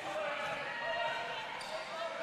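A basketball dribbled on a hardwood gym floor, against the steady background of a large indoor hall with faint, distant voices of players and spectators.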